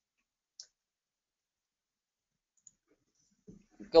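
Near silence with one faint, short, high click about half a second in. A voice starts speaking near the end.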